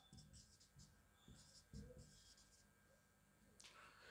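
Near silence, with a few faint scratches of a marker writing on a whiteboard.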